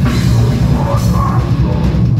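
Death metal band playing live and loud: distorted guitars and bass over a fast drum beat, with the singer growling into the mic.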